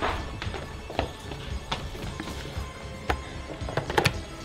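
Background film music under quick footsteps on a hard floor, about two steps a second, ending in a sharp knock as a wall-mounted phone handset is grabbed.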